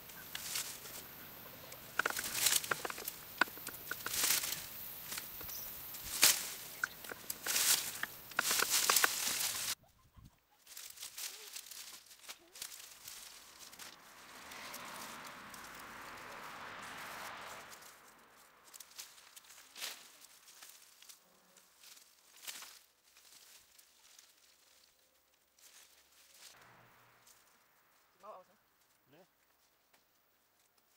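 Dry nettle stalks and straw crackling and snapping in quick, loud bursts as a wire-mesh potato tower is pulled apart. After about ten seconds it gives way to quieter scraping and a soft rush of dry, crumbly soil being dug and dropped by hand.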